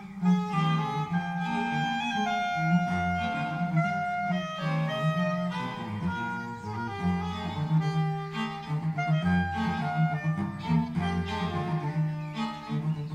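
A string quartet and a soprano saxophone playing jazz-influenced chamber music. Held melody notes sound over a low, pulsing cello line.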